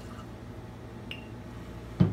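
Rum being poured from a bottle into a rocks glass over ice, faint, with one light glass tick about a second in.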